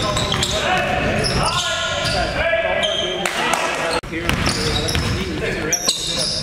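Live basketball game sound in a gym: voices calling out and the ball bouncing on the hardwood floor. The sound breaks off abruptly about four seconds in.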